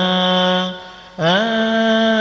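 A man's voice chanting a long, melismatic Coptic liturgical hymn, holding wavering notes. It breaks off for a breath a little past half a second in and comes back about a second in with an upward slide into the next held note.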